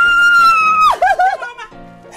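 A woman's long, high-pitched scream of joy, held steady with a slight waver, drops off sharply about a second in into a few short excited cries. Background music runs under it.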